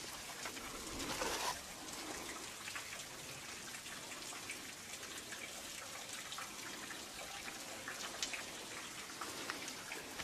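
Water drops falling: many small, scattered drop ticks over an even hiss, with a brief louder rustle about a second in.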